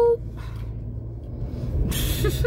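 Steady low road and engine rumble inside a moving car's cabin. At the very start, the end of a long held vocal note cuts off suddenly.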